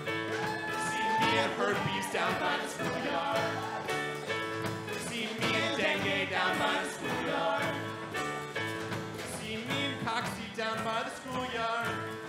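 A live band playing a song on keyboard, electric guitar, acoustic guitar and drum kit, steady and continuous, with a voice singing along.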